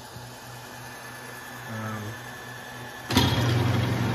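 Homemade brass-annealing machine driven by a garage door opener motor, running with a steady low hum. About three seconds in, a loud mechanical running noise starts suddenly.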